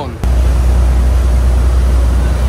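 Wind buffeting the microphone over the rush of a moving yacht's churning wake: a loud, steady rumble and hiss that cuts in suddenly just after the start.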